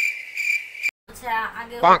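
Cricket chirping, a steady high trill in quick pulses, most likely a sound effect edited in. It cuts off abruptly about a second in, and a woman starts talking.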